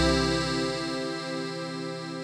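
The band's final held chord closing the song, fading out, with a regular pulsing wobble about three times a second; the bass drops away about a second in.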